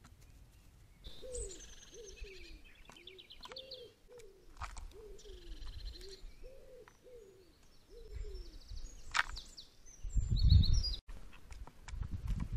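A pigeon cooing: a steady run of low, repeated coos, with small birds chirping and trilling higher above it. A loud low rumble comes near the end.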